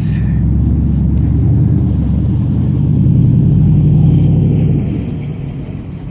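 A road vehicle passing close by, a low rumble that builds for about four seconds and then fades near the end.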